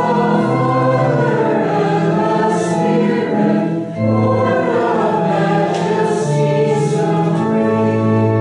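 A congregation singing a slow hymn with organ accompaniment, in held chords that change about once a second, with a short break between lines about halfway through.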